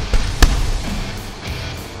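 Boxing gloves striking a heavy punching bag: two thumps, the louder about half a second in, over background music.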